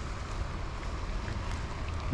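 Steady outdoor background noise: a low, fluctuating rumble of wind on the microphone under a faint, even hiss.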